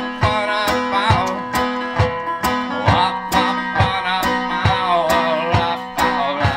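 Banjo being picked in a steady rhythm, with a low thump on the beat about twice a second.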